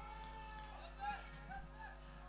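Faint, distant voices calling out on a football pitch, one long call at the start and short calls about a second in, over a steady electrical hum in the broadcast feed.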